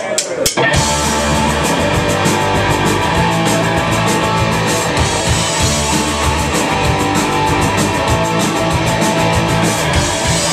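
Live punk rock band starting a song: a few sharp clicks, then drums, electric guitar and bass guitar come in together under a second in and play a loud, steady instrumental intro.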